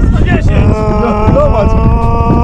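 Strong wind buffeting the microphone, a loud rumble throughout. Over it, from about a second in, a held, slightly wavering voice-like tone drones on.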